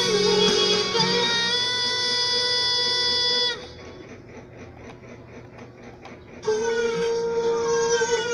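Pop ballad playing back from a screen, a singing voice holding long notes over the accompaniment. About three and a half seconds in the music drops to a faint, dull sound for about three seconds. It then comes back loud with another held note.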